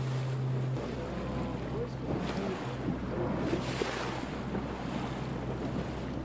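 Open-sea sound from on the water: waves washing and wind buffeting the microphone, over a steady low hum that shifts to a lower pitch about a second in.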